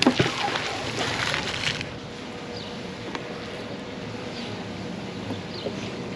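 A heavy fishing magnet on a rope splashes into a river, and the water noise goes on for a second or two. Quiet outdoor background with a faint steady hum follows.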